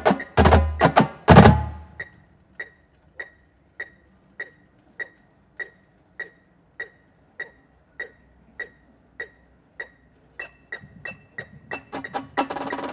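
A marching drumline's snare drums and bass drums play a loud passage that cuts off about a second and a half in. Then a metronome clicks steadily, a little under two beats a second, with a few extra lighter clicks joining it near the end.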